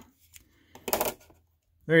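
Brief metallic clatter about a second in: a digital caliper and steel dive watch being handled and set down on a table.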